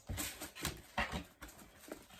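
Cardboard packaging being handled and opened: a string of irregular soft knocks and rustles, several close together in the first second and a few more after.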